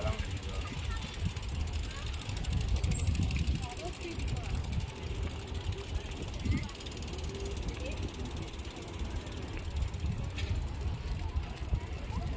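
Bicycle riding noise: a steady low rumble of wind buffeting the microphone and tyres rolling over paving, with faint voices in the background.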